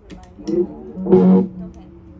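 Electric guitar through an amplifier played loose: a couple of notes about half a second in, then a louder struck chord about a second in that rings for about half a second and dies away, over a steady low tone.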